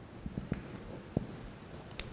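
Dry-erase marker writing on a whiteboard: faint scratching strokes with a few light taps.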